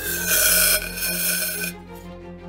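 A metal tube scraping over the steel rim of a small stove as it is lowered to snuff the fire: a scraping hiss, loudest about half a second in, with a ringing tone that slowly falls in pitch and fades near the end. Background music plays underneath.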